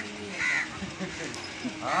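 A crow cawing once, a short call about half a second in.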